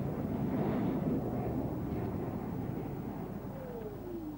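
Steady jet aircraft rumble that slowly fades, with a whine falling in pitch beginning near the end.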